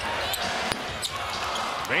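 Basketball arena crowd noise, with a few sharp knocks of a basketball bouncing on the hardwood court.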